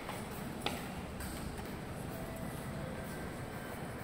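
Station elevator arriving and its doors sliding open, over a steady background hum, with a single sharp click about two-thirds of a second in and a faint short tone around the middle.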